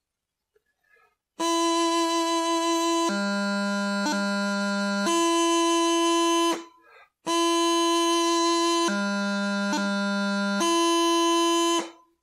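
Practice chanter playing the grip (leumluath) from E twice: a held E drops to low G, a quick D grace note flicks in, and the tune returns to E. Each phrase lasts about five seconds, with a short gap between them.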